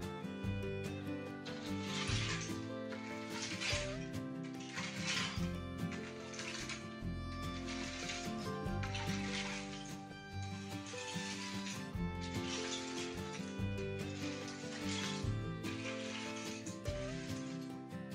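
Background music with the repeated scrape of a long-handled tool dragging loose rock across a gravel floor, about one stroke a second.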